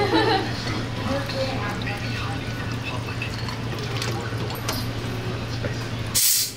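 Vodka poured from a bottle over ice cubes into a pint glass, the liquid splashing and trickling over the ice, with a steady low hum and chatter under it.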